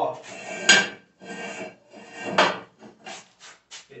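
Steel parts of a homemade belt-sander frame being handled: scraping, then two loud metallic clanks, one just under a second in and one past two seconds, followed by a few lighter knocks near the end.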